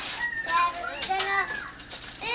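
Young children's high-pitched voices chattering and calling out, with wrapping paper rustling.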